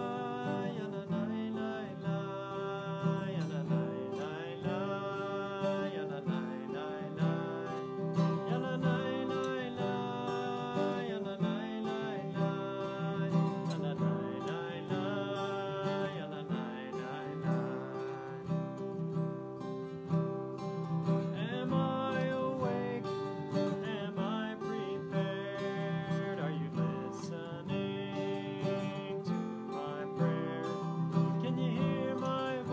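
A man singing a wordless melody on 'yananay' syllables, accompanying himself on a strummed acoustic guitar.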